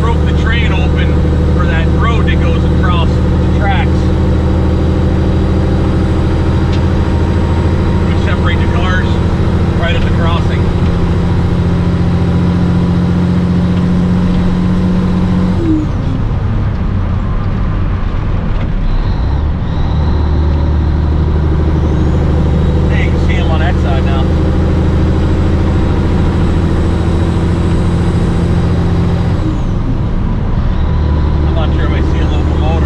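Steady low diesel drone of a 1984 Peterbilt 362 cabover, heard from inside the cab while it drives down the highway. About sixteen seconds in, the engine note drops away for a few seconds, then comes back.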